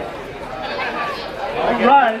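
Spectators' chatter and overlapping voices around a grappling cage, with one louder call rising near the end.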